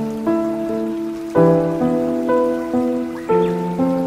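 Background music of sustained chords, with a new chord struck about every one to two seconds.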